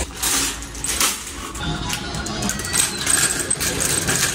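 Metal wire shopping cart pulled out of a stack of nested carts and rolled along, its wire basket rattling and clinking in many short sharp knocks.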